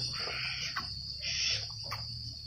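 Crickets trilling steadily in a high, even chorus, with a few faint brief rustles.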